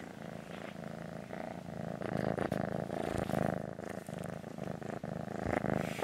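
Kitten purring close to the microphone, a steady, finely pulsing purr that grows louder through the middle.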